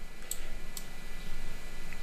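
Two computer mouse clicks, about half a second apart, as the erase brush is applied in the editor, over a steady low hum and background hiss.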